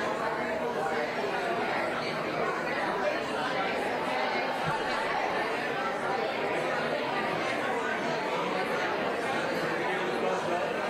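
Indistinct chatter of many people talking at once in a large room, a steady murmur with no single voice standing out.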